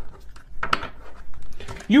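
Tarot cards being handled as clarifier cards are drawn: a handful of short, light clicks and taps of card stock against the deck and table.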